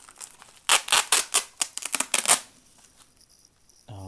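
Bubble wrap being pulled open and handled, giving a quick run of sharp crinkling crackles from just under a second in to about two and a half seconds, then quieter rustling.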